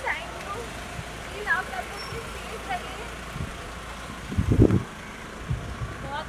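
Street traffic rumbling steadily under faint voices of people nearby, with a loud low rumbling thump about four and a half seconds in.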